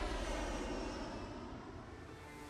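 A rushing, whoosh-like rumble from a broadcast title-sequence sound effect, fading away steadily.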